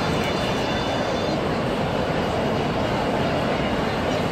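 Steady jet engine noise of an airliner on a runway, heard from old newsreel film played back on a display screen.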